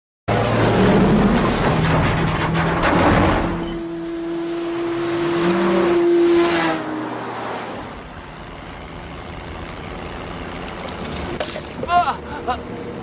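Heavy logging truck passing on a wet highway, its engine running under the hiss of tyres on wet asphalt. Then a steady tone is held for about three seconds and falls in pitch as a car rushes past, before the sound settles to a low steady road hum.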